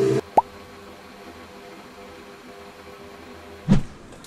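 Speech and music cut off abruptly, then a single short plop rising in pitch. Faint steady room tone with a low hum follows, broken by a short dull thump near the end.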